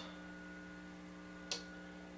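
Steady electrical hum on the recording, made of several fixed tones, with one brief faint noise about a second and a half in.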